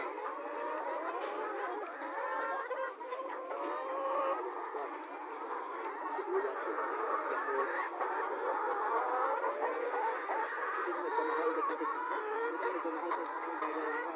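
A large flock of chickens, mostly Black Australorps, clucking and calling all at once in a dense, continuous chorus.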